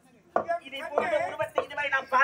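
A performer's loud voice on stage, starting about a third of a second in, with sharp, abrupt attacks.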